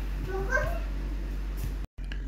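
Steady low electrical hum, with a brief faint pitched call that rises about half a second in. The sound cuts out for an instant near the end.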